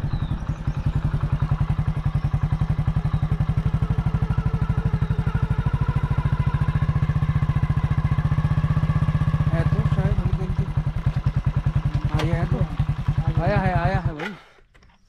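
Motorcycle engine running at low road speed, a steady rapid pulsing of its firing strokes as the bike rolls slowly along a dirt road. The note changes about ten seconds in, and the engine stops suddenly at the very end.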